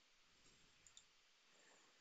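Near silence: faint room tone with two faint clicks of a computer mouse close together about a second in.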